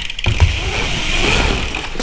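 BMX tyres rolling across a skatepark ramp: a steady low rumble, with a sharp knock about half a second in.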